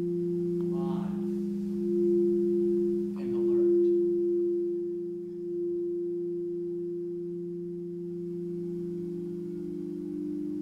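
Quartz crystal singing bowls played with a mallet, ringing as steady overlapping low tones that swell and ease. A new tone joins near the end. Two brief sounds come over the ringing about one and three seconds in.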